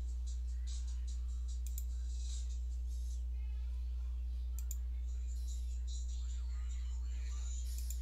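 Steady low electrical hum on the audio line, with faint scattered clicks over it.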